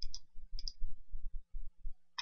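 Computer mouse clicking: two quick double clicks, one right at the start and one about half a second later, over a low irregular rumble.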